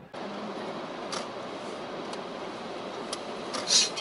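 Steady engine and road noise heard inside a moving car's cabin, with a few light ticks.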